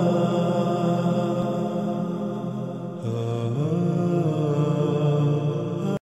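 Chanted vocal intro music with long held notes. The pitch shifts about three seconds in, and the music cuts off abruptly at the end.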